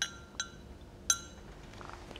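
Three light clinks of small paint pots being handled, each a short, bright tick with a brief ringing tail.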